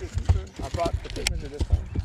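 Irregular thumps and knocks of a freshly landed striped bass flopping on a carpeted boat deck, with one sharp knock just past a second in.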